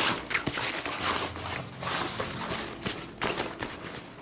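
Ripstop nylon fabric and padded shoulder straps of a duffel bag rustling and scraping in irregular handling noises as hands stuff the straps back into their zip-away pocket.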